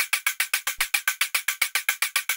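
Synthesized hi-hats from Ableton's Collision instrument (a noise exciter fed through a resonator) playing solo. They make a fast, even run of short, bright metallic ticks, about ten a second.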